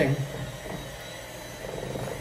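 Electric hand mixer running steadily, its beaters whirring through thick cream cheese and mango puree batter in a metal bowl.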